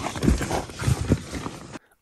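A few dull knocks and thumps as gear is handled and shifted against a plastic storage case, over a steady hiss. The sound cuts off suddenly near the end.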